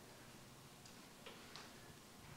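Near silence: faint room tone with a few weak ticks.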